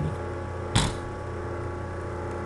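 A single sharp mouse click about three-quarters of a second in, heard over a steady electrical hum.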